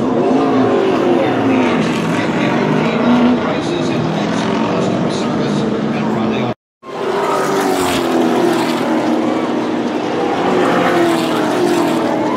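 A field of NASCAR stock cars running at speed: a loud, continuous engine noise with pitches sliding as cars go by, and crowd voices mixed in. The sound cuts out for a moment a little past halfway.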